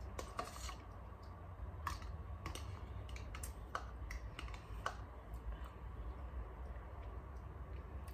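Eating sounds: a metal fork clicking and scraping against a plastic tub, with chewing, heard as irregular sharp clicks about every half second to a second over a steady low hum.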